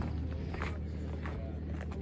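Faint footsteps on gravel over a steady low hum, perhaps from an engine or machine running somewhere in the paddock.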